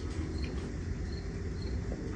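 Faint cricket chirps, short high notes repeating about every half second, over a steady low hum.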